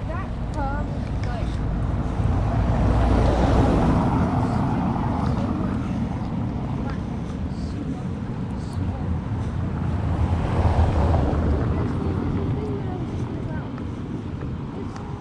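Wind rumbling on the microphone of a hand-held camera during a walk outdoors. The noise is steady, swells louder twice, and has a few faint short chirps near the start.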